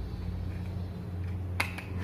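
A sharp click of a screwdriver tip against a switch terminal about one and a half seconds in, followed by a fainter tick, over a steady low hum.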